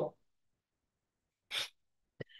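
A single short, sharp breath noise from a person about one and a half seconds in; otherwise near silence.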